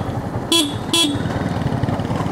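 Two short vehicle-horn toots about half a second apart, over the steady running of a Yamaha MT-15 motorcycle's single-cylinder engine and road noise while riding.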